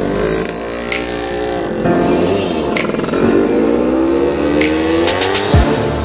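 A car's engine accelerating hard, its pitch climbing steadily through the second half, under background music with a steady beat; the engine sound cuts off abruptly near the end.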